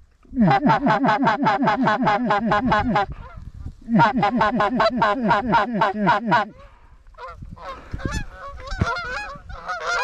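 Geese honking: two long runs of rapid, evenly spaced honks, about six a second, then scattered, looser honks near the end.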